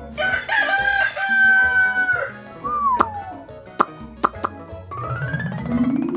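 Rooster crowing: one long cock-a-doodle-doo that ends in a falling slide. A few sharp clicks and a rising swoop follow near the end, over light background music.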